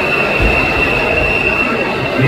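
A steady high-pitched tone held for about two seconds, stopping near the end, over a loud hubbub of voices.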